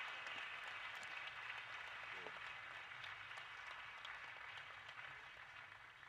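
Audience applause, faint and steady, slowly dying away toward the end.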